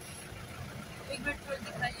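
A vehicle's engine running with a steady low rumble.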